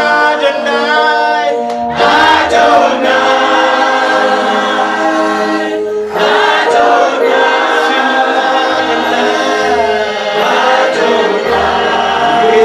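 Gospel praise-and-worship vocal group singing into microphones: a male lead with male and female voices behind him. The singing comes in held phrases, with brief breaks about two seconds in and again about six seconds in.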